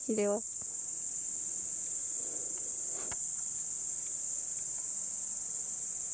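Crickets chirping in the grass: a steady, high-pitched chorus that runs on without a break.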